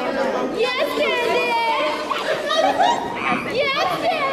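Several young women's voices chattering and shrieking excitedly at once, with high-pitched cries rising and falling over one another, in a large gym.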